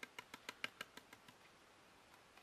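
Faint, quick light ticks, about six a second, from a plastic tray of embossing powder being tilted and jiggled. They fade out about a second and a half in.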